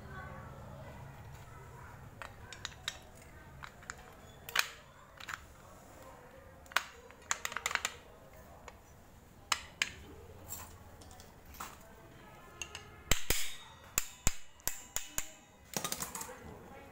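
Irregular metallic clicks and clinks of a motorbike drum-brake backing plate being handled and fitted, the brake shoes, springs and cam knocking against the metal plate. The clicks come in scattered clusters, busiest near the end.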